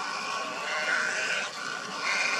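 A flock of little egrets calling, many harsh croaking calls overlapping at once, loudest about a second in.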